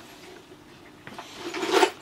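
A cat's claws scraping and rubbing on a corrugated cardboard cat box. The sound swells from about a second in to a peak just before the end.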